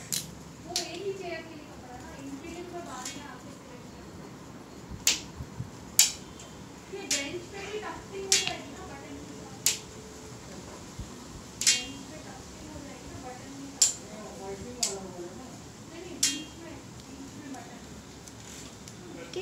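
Light, sharp clinks, irregularly spaced about one every second or two, over faint muffled voices.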